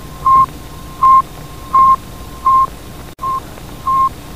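Short electronic beeps at one steady pitch, six of them about 0.7 s apart, over a steady radio-static hiss, from a homemade Arduino space-mission control panel. The sound cuts out for an instant a little after three seconds.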